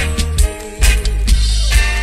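Reggae dubplate playing: heavy bass line under melody lines, the bass dropping out briefly about half a second in.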